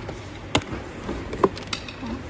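Hard plastic clicking and knocking as a battery box is worked loose and lifted out of its plastic compartment, with two sharp clicks about half a second and a second and a half in, and lighter taps between them.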